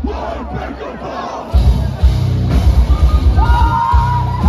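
A metalcore band playing live to a loud crowd. Many voices shout over the music for the first second and a half, then the heavy drums come in with fast bass-drum beats, and a held high note sounds near the end.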